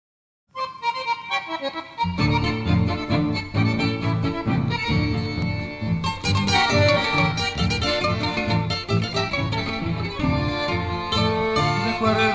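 Instrumental introduction of a chamamé: a bandoneón plays the melody, with guitar accompaniment. A steady, pulsing bass rhythm comes in about two seconds in.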